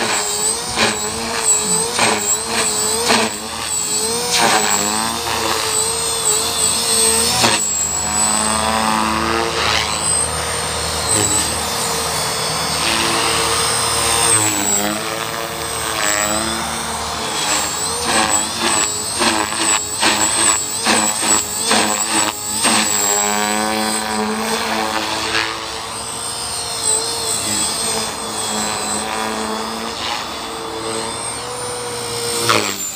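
Align T-Rex 450 Pro electric RC helicopter in flight: a high motor and gear whine with rotor blade noise, its pitch rising and falling again and again as the rotor loads up in manoeuvres. Runs of quick pulses of blade noise come several times, most of all past the middle.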